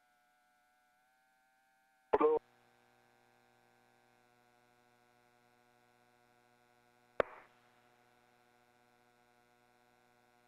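Space-to-ground radio loop between transmissions: near silence with faint steady hum tones. A short clipped fragment of voice comes about two seconds in, and a single sharp click with a brief hiss about seven seconds in, like a mic key or squelch.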